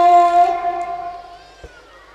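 A man's voice holding one long sung note into a handheld microphone; it fades out about a second and a half in, and a short click follows.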